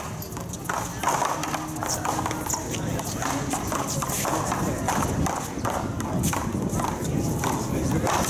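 Paddleball rally: a rubber ball struck with paddles and rebounding off a concrete wall, a run of sharp knocks at irregular intervals.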